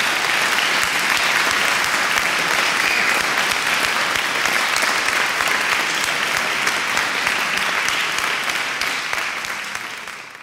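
Crowd applauding, a dense, steady clapping that fades out near the end.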